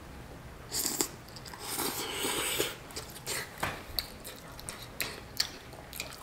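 A person eating noodles: slurping in a mouthful, with a short slurp about a second in and a longer one around two seconds, then chewing with a few short mouth clicks.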